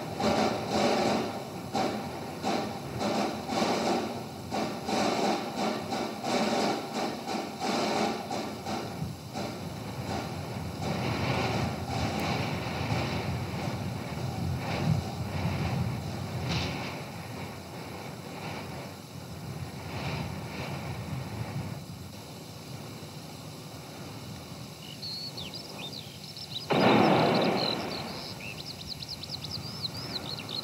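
Sound effects of a horse-drawn coach: a quick, regular clatter of hooves and wheels for the first several seconds, giving way to a steady rolling rumble that fades. Near the end birds chirp, and a loud burst about a second long stands out.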